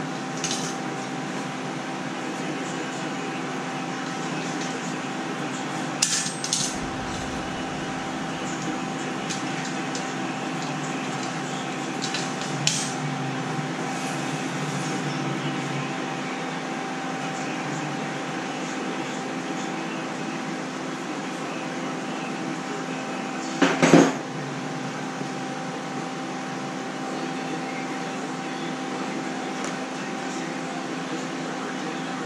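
A steady electrical hum holding a few fixed tones, with a few short knocks and clatters of welding gear being handled; the sharpest clatter comes about 24 seconds in.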